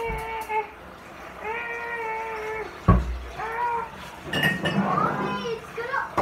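A person singing long, drawn-out high notes, about a second each, with a single loud thump just before the middle.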